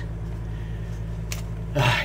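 A steady low hum with a single short click about a second and a half in.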